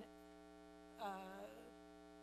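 Steady low electrical hum in a pause in speech, with a single hesitant spoken 'uh' about a second in.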